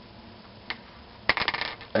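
Light clicks and taps from a wooden ruler, popsicle stick and pen being handled on a wooden tabletop: one click about a third of the way in, then a quick flurry of taps shortly before the end.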